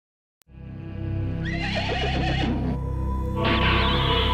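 Low music drone with a horse whinnying over it, the whinny wavering and falling about a second and a half in, and a further burst of sound near the end.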